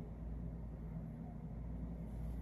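Steady low background hum in a small room, with no distinct event.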